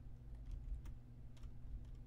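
A few faint, sharp computer keyboard clicks over a steady low hum.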